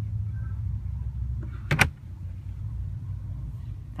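Glovebox lid of a car being shut with a single sharp knock about two seconds in, over a steady low hum inside the cabin.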